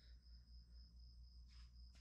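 Near silence: faint room tone with a low hum under a faint, steady, high-pitched cricket trill.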